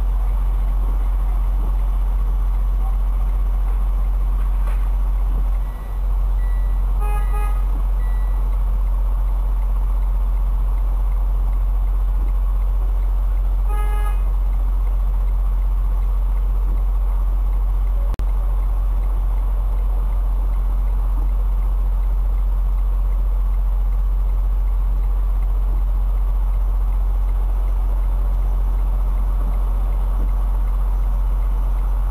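Steady low drone of a Detroit DD15 diesel engine running in a Freightliner Cascadia, heard from inside the cab. A vehicle horn toots briefly about seven seconds in and again around fourteen seconds.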